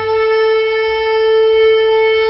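A single long, steady note from a horn-like wind instrument, held without any change in pitch, in the programme's opening music.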